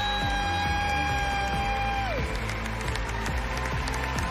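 Show music with one long held high note that slides down and ends about halfway through, over a steady low backing.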